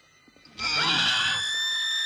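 A high-pitched, steady scream from the film's soundtrack begins about half a second in, after a brief near-silence, and holds one pitch to the end.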